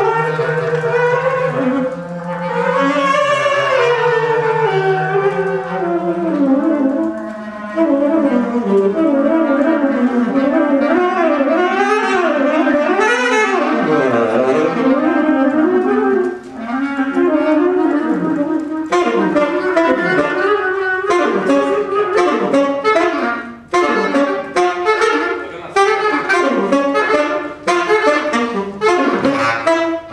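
Tenor saxophone and bass clarinet playing a jazz duet. For the first several seconds the bass clarinet holds a low note under the saxophone's melody, then the two lines weave around each other. In the last third the playing turns to short, choppy notes.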